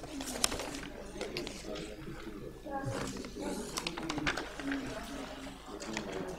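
Indistinct low voices murmuring off-microphone, with a few light clicks and knocks.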